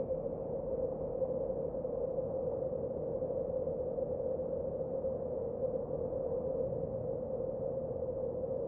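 Slow ambient drone music: a steady, noisy drone strongest in the low middle range, with no beat.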